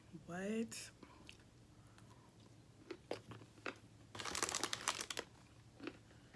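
A short rising hum from the eater at the start. Then scattered clicks and, about four seconds in, a second-long burst of crinkling as a paper Chinese-takeout box is handled.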